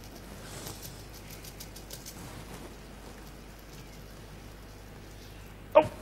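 Dry rice grains trickling through a glass funnel into a glass beaker: a faint patter of many small ticks that thins out after about two and a half seconds.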